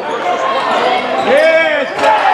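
Basketball shoes squeaking on a hardwood gym court during play, several short squeals and one longer one about a second and a half in, with voices of players and spectators around them.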